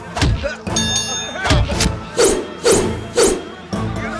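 Action-film fight soundtrack: background music under repeated punch and impact thuds, about two a second, with a brief metallic ring about a second in.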